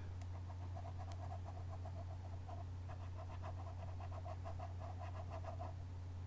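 Stylus scribbling on a tablet in rapid back-and-forth strokes, about four a second, shading in a drawn bar, over a steady low hum.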